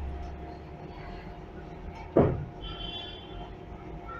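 Hydraulic elevator car travelling, with a steady hum and rumble. About two seconds in there is a sudden loud clunk, followed by a brief high squeal.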